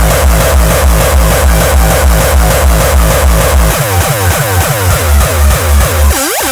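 Uptempo hardcore electronic track: a fast, heavy kick drum beating steadily under dense synths. From about four seconds in, swooping synth lines that glide up and down come in.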